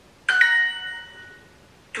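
Duolingo app chime from a phone's speaker: a bright quick two-note ding about a third of a second in, fading out within a second.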